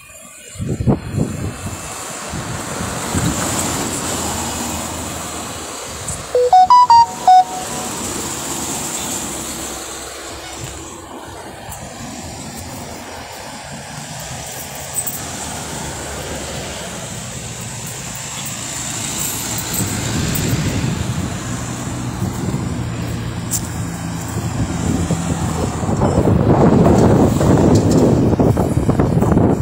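Roadside traffic: cars driving past on the road, with a vehicle passing close and growing louder over the last several seconds. About seven seconds in there are three short, loud beeps.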